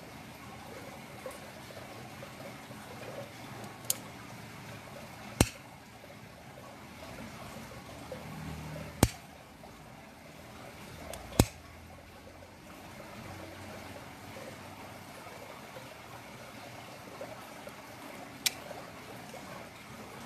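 Plier-style dog nail clippers snipping through a dog's claws: five sharp clicks a few seconds apart, the loudest about five, nine and eleven seconds in.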